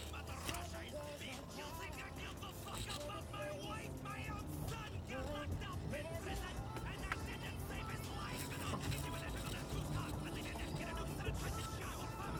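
Rap music: a man rapping a verse over a hip-hop beat with a steady bass line.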